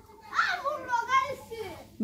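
A child's voice talking in short phrases.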